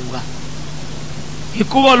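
A steady hiss with a low, even hum fills a pause in the amplified voices; about one and a half seconds in, a man's voice over a microphone starts again.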